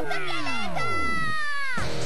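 End of a cartoon's rock theme music: a pitched sound glides steadily downward for about a second and a half, then cuts off suddenly.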